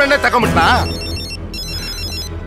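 Mobile phone ringing: a high-pitched electronic ringtone of rapid stepping beeps, repeating over and over.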